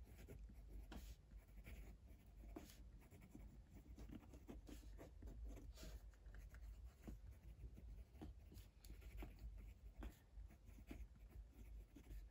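Fineliner pen writing on a lined notebook page: faint, short, irregular scratching strokes over a low steady room hum.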